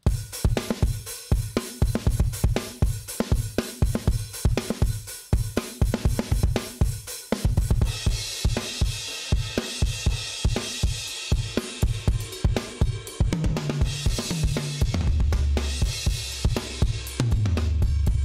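Sampled rock drum kit from the UJAM Virtual Drummer BRUTE plugin playing a mid-90s style groove of kick, snare and hi-hat. About eight seconds in it switches to a chorus phrase with a heavier cymbal wash, and deep sustained low notes ring under it in the last few seconds.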